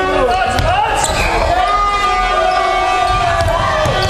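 Basketball being dribbled on a hardwood court floor during play, with voices and a steady held tone behind.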